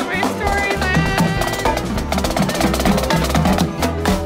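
Marching snare drums playing a fast, busy cadence, with a tune playing along.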